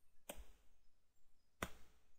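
Two single keystrokes on a computer keyboard, sharp clicks about a second and a half apart, with near silence between.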